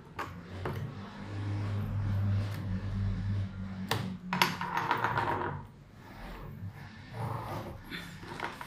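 Pencil work on a paper shoe pattern laid on a table: light clicks and taps, one sharp tap about four seconds in, then a short stretch of pencil scratching on the paper. A low steady hum sits underneath for the first few seconds.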